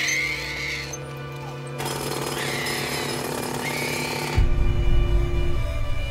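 Pneumatic jackhammer breaking up road pavement, a rapid rattling hammering that is loudest from about four and a half seconds in, over background music with steady held tones.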